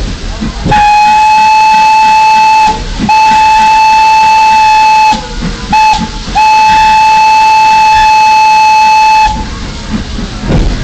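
Steam locomotive whistle, loud and single-toned, blown in the long–long–short–long pattern: the signal for approaching a road crossing.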